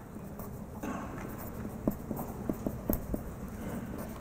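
Marker pen writing on paper: a soft scratching that starts about a second in, with a few short taps in the second half as the letters are stroked out.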